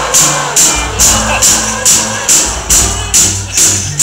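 Live rock band playing an upbeat song with a steady beat of about two strokes a second, on acoustic and electric guitars, bass guitar and drums. It is loud and harsh through a compact camera's microphone.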